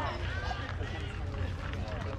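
Several people talking and calling out around a baseball field, with no words clear, over a steady low rumble.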